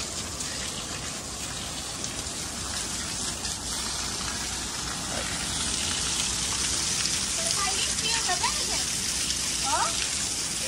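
Steady rush of running water, gushing and splashing, with faint voices near the end.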